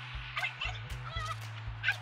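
A dog giving a few short, high-pitched wavering whines and yips, over a steady low hum.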